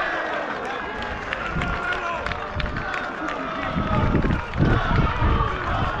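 Players and spectators shouting and cheering to celebrate a goal, several voices calling at once, with low rumbles of wind and handling on the microphone about four and five seconds in.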